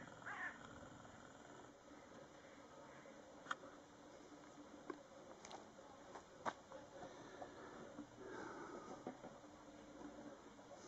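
Near silence: faint outdoor background with a few short, sharp clicks, three of them standing out about three and a half, five and a half and six and a half seconds in.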